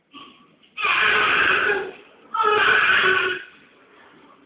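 Newborn baby crying: two long wails of about a second each, with a short pause between.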